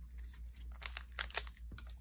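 Faint handling of Magic: The Gathering cards and a foil-wrapped collector booster pack on a playmat: light crinkling and a handful of short clicks, bunched in the middle.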